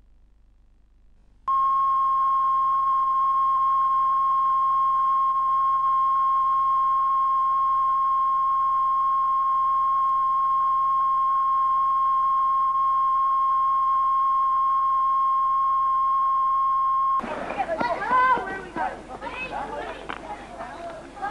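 Steady 1 kHz broadcast line-up tone, the test signal that goes with colour bars, with a faint hiss. It starts abruptly about a second and a half in, cuts off suddenly near the end, and voices begin.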